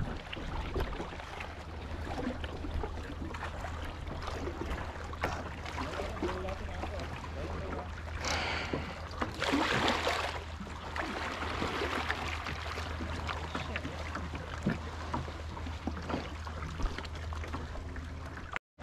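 Kayak paddling on calm sea water: paddle splashes and drips with water lapping at the hull, and two louder splashes about halfway through.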